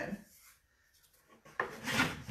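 About a second of near silence, then a paintbrush rubbing chalk paint across a wooden drawer in the last half second.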